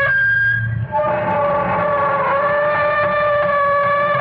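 Eerie opening theme music of a radio drama: a sustained chord of steady, horn-like held tones that shifts to a new chord about a second in and then holds.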